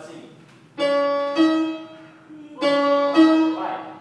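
Piano-toned keyboard playing the same short two-note figure twice, about two seconds apart; each time the note steps up partway through and then dies away.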